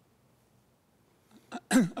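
Quiet room tone for over a second, then a single short throat-clearing cough near the end.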